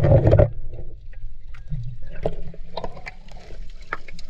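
Water splashing and sloshing around a GoPro held at the surface, the microphone dipping in and out of the water. The loudest splash comes right at the start, followed by scattered smaller splashes and knocks over a low rumble.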